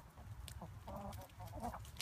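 Chickens clucking quietly, a few short clucks around the middle.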